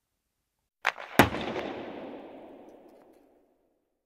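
Logo outro sound effect: two sharp hits about a third of a second apart, the second louder, followed by a crackling, reverberant tail that fades away over about two seconds.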